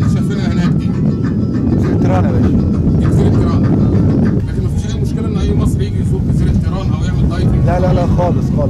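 Steady low rumble of a boat under way at sea, engine and wind on the microphone, with faint voices in the background.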